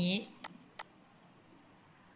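Two sharp computer mouse clicks about a third of a second apart, zooming in on the shared document, followed by near silence.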